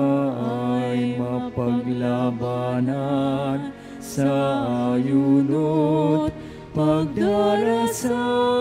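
A hymn sung by a single melodic voice over sustained instrumental accompaniment, moving note by note with a steady low bass line and ending on a held chord.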